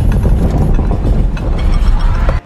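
Film earthquake sound effect: a loud, deep rumble with a few short clicks and rattles on top.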